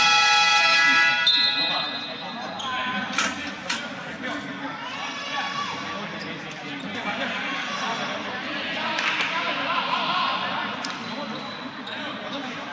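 A basketball game horn (the scorer's table buzzer) sounds one steady, loud tone and cuts off under two seconds in. Then voices and a few basketball bounces echo around the sports hall.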